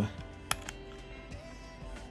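Quiet background music, with one sharp click about half a second in as a USB tester plug is pushed home into a laptop USB port.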